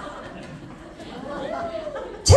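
Low chatter of a roomful of people talking among themselves, with one voice rising and falling in pitch near the end.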